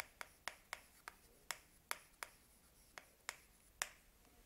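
Chalk tapping on a chalkboard as characters are written: a string of faint, sharp clicks at uneven spacing, about three a second.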